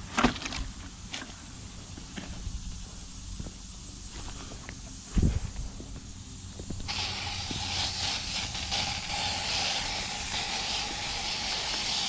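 Two thumps in the first half, then a hand-held sprayer starts about seven seconds in, giving a steady hiss as it blows an insecticide mist to kill the remaining hornets.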